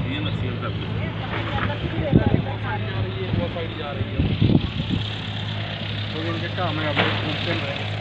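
A steady low engine hum that holds level throughout, with scattered voices of people nearby over it.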